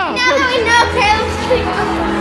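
A child talking over background electronic music.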